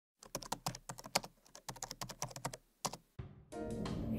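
Keyboard typing: a quick, irregular run of key clicks for about three seconds, stopping shortly before a steadier background sound comes in near the end.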